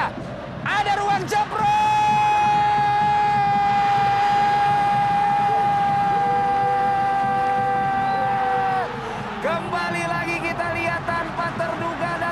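Football TV commentator's goal call: a short excited cry, then one long held shout of "gol" on a single high steady note for about seven seconds, breaking off near the end into fast excited speech.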